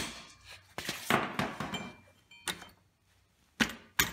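Hammer blows on a steel rear axle bolt that is being driven out of a pocket bike's swingarm: a few sharp strikes a second or more apart, with rattling and brief metallic clinks between them.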